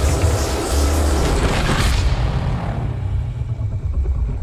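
Film-trailer soundtrack: music under a heavy, continuous low rumble and dense noisy sound effects. The noise thins out after about two seconds, leaving mostly the low rumble.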